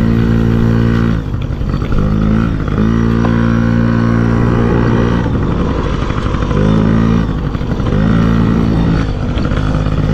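Small dirt bike engine running hard under the rider, heard close up. Its note holds steady for stretches, then drops and climbs back several times as the throttle eases off and comes back on.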